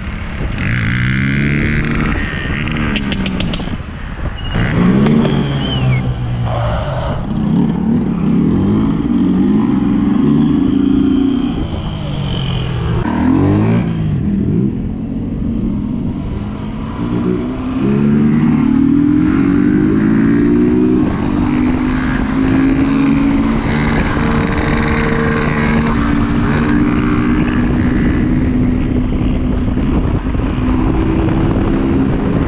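Small street motorcycle engines revving up and down again and again, the pitch rising and falling with the throttle, settling into steadier running with slow climbs in pitch in the second half.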